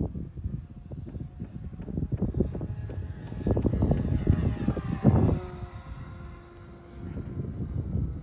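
Electric RC Spitfire on a 5S battery making a low pass, its motor and propeller whine falling in pitch as it goes by about halfway through. Wind buffets the microphone throughout, loudest in a gust just after the pass.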